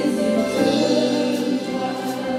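Slow gospel worship music: a small group of backing singers singing over long held chords.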